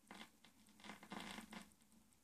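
Near silence: faint crackle and scratchy surface noise from a vinyl LP record, strongest about a second in, over a steady low hum.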